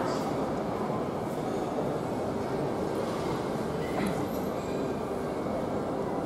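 Steady, even background noise of a large airport terminal hall: a continuous low hum with faint distant voices mixed in, and a brief light click about four seconds in.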